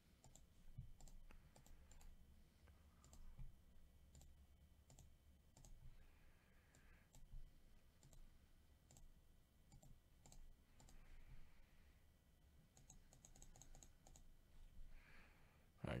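Faint clicks of a computer mouse and keyboard, scattered single clicks with a quick run of several about thirteen seconds in.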